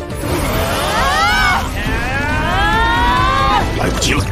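Sound of an animated fight scene: two high cries, each rising then falling, the second longer, over a low rumble and dramatic music as an energy attack bursts out.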